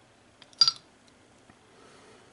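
A single sharp click of hard plastic with a brief high ring, from the brush cap of a plastic cement bottle being handled and set down, followed by a faint tick about a second later.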